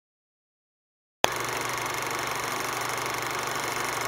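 Old film projector sound effect: silence, then about a second in a click and a steady mechanical whirr with a constant hum that runs on evenly.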